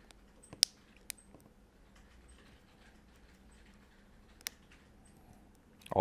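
Sparse sharp plastic clicks as the Samsung Galaxy S4's mid-frame clips snap into place under finger pressure around its edges: a loud click just after half a second in, another about a second in, and one more near the end, with faint ticks between.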